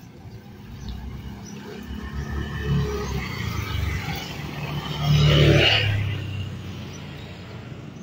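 A motor vehicle passing close by on the road. Its engine sound builds for several seconds, is loudest about five to six seconds in, then fades away.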